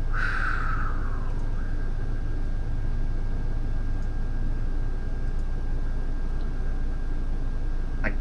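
Steady low hum of room background noise with a thin high tone over it, and a short falling rush of sound in the first second.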